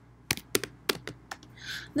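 Computer keyboard typing: about half a dozen light keystroke clicks over the first second and a half, as a short line is typed into a code editor.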